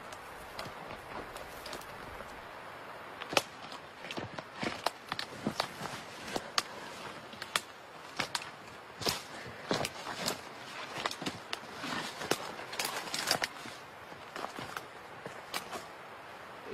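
Twigs snapping outside a tent: a string of irregular sharp cracks and snaps that begins a few seconds in and keeps coming, over a steady hiss.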